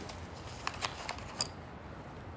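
Quiet room tone with three faint short clicks: two close together about two-thirds of a second in, and a third near the middle with a brief high ring.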